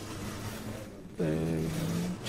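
A faint steady noise for about a second, then a man's voice holding a long, even hesitation sound ('eee').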